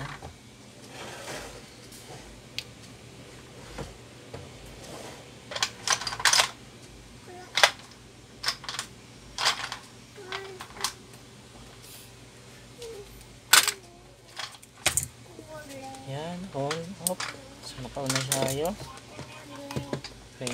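Scattered sharp clicks and light taps of a soldering iron and a solder spool being handled over a speaker's circuit board while a switch is soldered on, over a steady low hum. A voice sounds briefly near the end.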